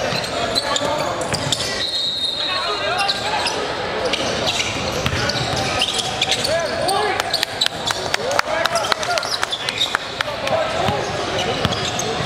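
A basketball bouncing on a hardwood gym floor as players dribble, with a quick run of bounces from about seven seconds in. Players' and spectators' voices echo through the large hall.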